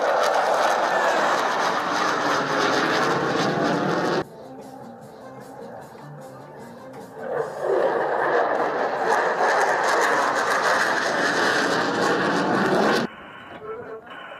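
F-16 fighter jet's engine roar during a low display pass. It is loud for about four seconds, drops away suddenly, comes back loud a few seconds later, then cuts off about a second before the end.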